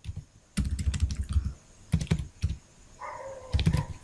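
Keystrokes on a computer keyboard as code is typed into an editor: an irregular run of quick clicks, pausing briefly before a last few near the end.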